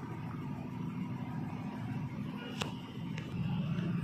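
Quiet, steady low background rumble with two faint short clicks, about two and a half and three seconds in.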